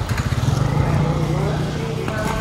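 A motor vehicle engine running close by on the street, growing louder about half a second in, over faint background voices.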